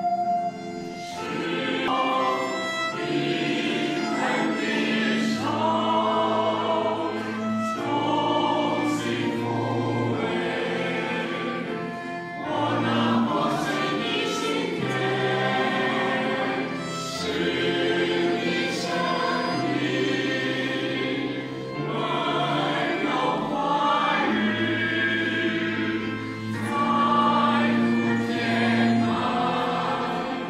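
A choir singing a slow Chinese Christian hymn in phrases, over sustained low instrumental accompaniment.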